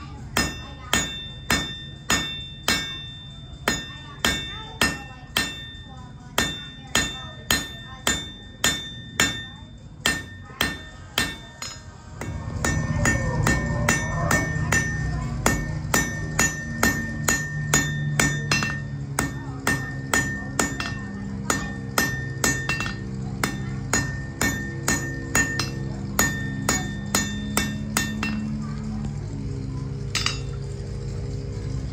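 Blacksmith's hand hammer striking a red-hot iron bar on an anvil, about two blows a second, each leaving a bright ringing tone. About twelve seconds in, a steady low rumble joins underneath while the hammering goes on.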